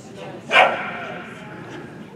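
A corgi gives one sharp, loud bark about half a second in, echoing in a large hall, over faint voices in the background.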